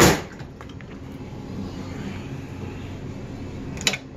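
Table-mounted can opener cutting open a can of tuna: a sharp clank as the can is set on the blade, a steady quieter run as the lid is cut around, and another clank near the end.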